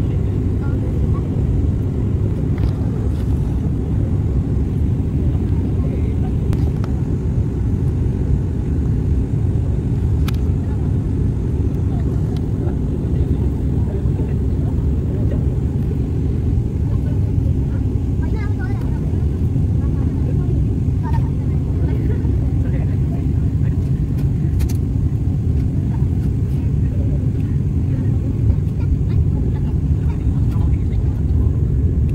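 Steady low drone of a turboprop airliner's engines and propellers heard from inside the passenger cabin in cruise flight, unchanging throughout.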